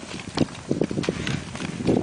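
A jallikattu bull's hooves thudding and scrabbling irregularly on loose earth and gravel as it climbs a dirt mound during training.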